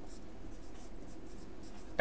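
Marker pen writing on a whiteboard: a run of short, faint strokes as a word is written by hand.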